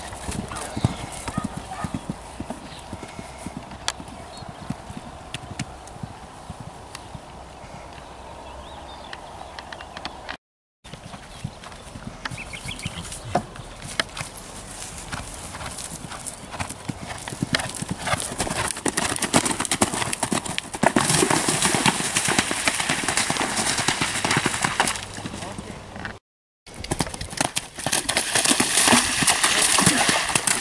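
Horses' hooves thudding on grass turf at the canter and gallop, a fast run of hoofbeats that grows louder in the second half. Two brief silences break it.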